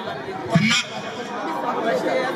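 Voices talking: crowd chatter, with one louder voice about half a second in.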